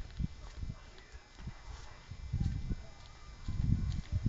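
Faint low thuds at irregular intervals, a few over the seconds, over a quiet background.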